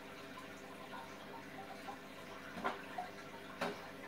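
Aquarium water trickling with a steady low hum of the tank's pump, and two short sharp sounds about a second apart near the end.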